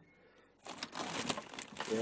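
Plastic produce bags crinkling as they are handled and moved in a refrigerator vegetable drawer, starting about half a second in.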